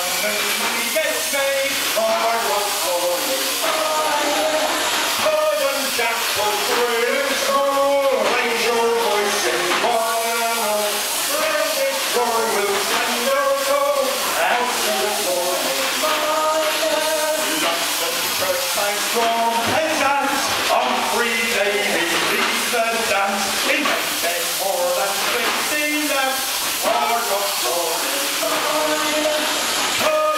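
A crowd of voices singing together over a steady hiss of steam vented by the Man Engine, a giant mechanical miner puppet.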